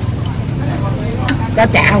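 A steady low rumble of a running motor, with a few light clicks about a second in and a short spoken phrase near the end.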